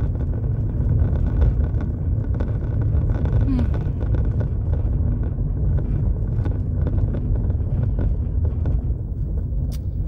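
Road noise inside a moving car's cabin: a steady low rumble from the tyres and drivetrain, with many small knocks and rattles from a rough road surface.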